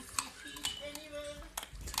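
Bullmastiff/pitbull puppies chewing and tearing at a raw whole chicken, with several sharp cracks and clicks of teeth on bone and flesh.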